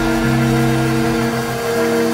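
Live rock band holding a sustained chord, electric guitars and bass ringing on steady notes without a beat; the lowest bass note drops out about a second in.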